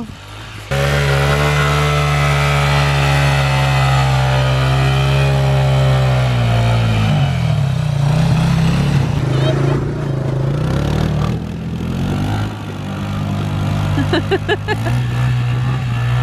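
A three-wheeled motorcycle (trike) engine running close by, a steady drone that starts just under a second in. In the middle it rises and falls in pitch a few times as the throttle is worked, then settles steady again. A short laugh comes near the end.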